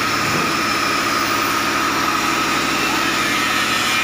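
An electric power-tool motor running steadily on a woodworking site: a constant high whine over an even hiss, with no change in speed.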